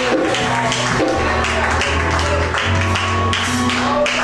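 Live church band music: low bass notes changing pitch under drums keeping a steady beat of about three hits a second.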